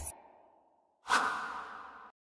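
Whoosh sound effects of an animated logo sting: a short one that cuts off right at the start, then a sudden whoosh about a second in that fades away over the next second.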